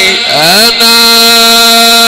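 Male Quran reciter chanting in melodic tajweed style into a microphone: after a brief break the voice slides upward over about half a second into one long, steady held note.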